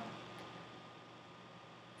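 Faint steady hiss of microphone room tone, with no distinct sound events.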